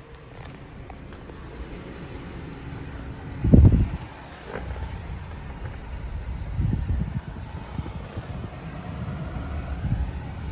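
Wind buffeting the microphone in irregular low rumbling gusts, the strongest about three and a half seconds in.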